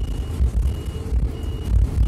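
A high electronic beeper in a midsize city bus, sounding short even beeps about one and a half times a second, over the low rumble of the bus's engine and running gear.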